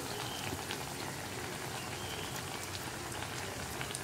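Parippu vada (lentil fritters) deep-frying in hot oil: a steady sizzle with fine crackling.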